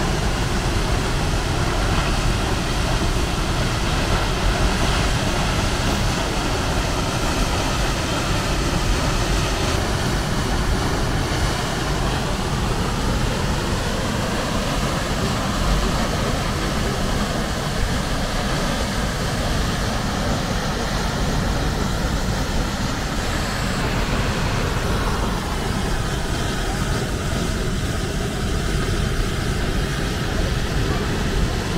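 Large waterfall dropping about 40 m off a cliff into the sea, giving a loud, steady rush of falling water.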